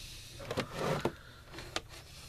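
Handling noise from a GE 7-4545C clock radio being picked up and turned over: a few sharp clicks, about half a second in, a second in and near the end, and a short rubbing scrape of the cabinet against hand and table.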